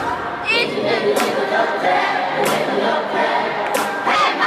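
Live arena concert sound, recorded on a phone: many voices singing together over light music, with short crisp hits about every second and a half and crowd noise under it.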